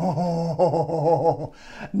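A man's appreciative humming laugh, its pitch bobbing up and down for about a second and a half, trailing off into a breathy exhale near the end.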